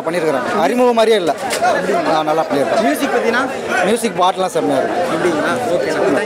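A man talking close to the microphone, with the chatter of a crowd behind him.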